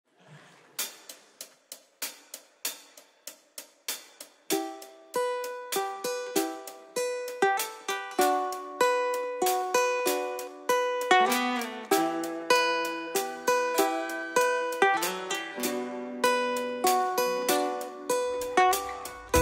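Instrumental introduction on plucked acoustic strings: single picked notes at about two a second, then from about four and a half seconds in, fuller picked notes and chords from acoustic guitars, building louder. No singing and no bass yet.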